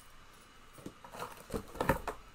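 Cardboard product box being handled: soft rustles and a few light knocks as it is picked up and moved, growing busier in the second half.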